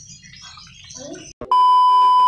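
A loud, steady test-tone beep of about 1 kHz comes in sharply about one and a half seconds in, the tone that goes with a colour-bars glitch transition.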